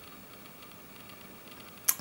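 Quiet room tone: a faint, steady hiss with nothing else distinct, until a sharp mouth sound just before the voice resumes at the very end.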